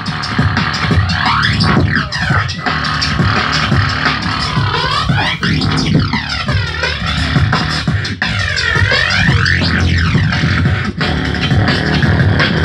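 Electronic music from DJ decks through a club sound system: a steady low beat with a sweeping effect that swooshes down and back up in pitch several times.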